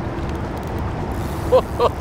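Steady wind and river noise rushing over the microphone, with a short laugh near the end.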